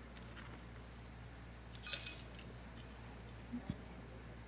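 Quiet room tone with a low steady hum, broken by a sharp clink about two seconds in and two softer knocks near the end.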